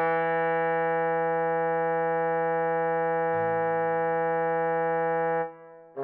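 Trombone holding one long tied note for about five and a half seconds over a sustained lower part that shifts to a new note about three seconds in. The note stops shortly before the end, and the next notes start right at the end.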